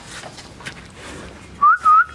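A short, loud two-note whistle near the end: a quick rising note and then a second, steadier one. Before it there are faint clicks and rustling.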